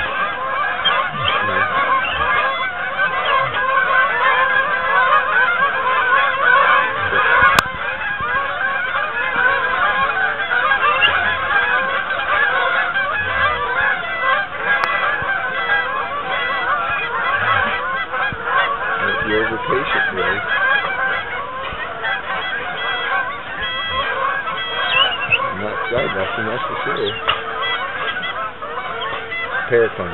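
A large flock of geese honking in a continuous, dense chorus of many overlapping calls as they fly over. A single sharp click cuts through about seven and a half seconds in.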